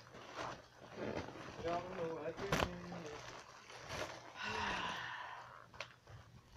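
Quiet, low murmured voices and handling noise, with a sharp click about two and a half seconds in. About four and a half seconds in there is a breathy rush of air lasting about a second.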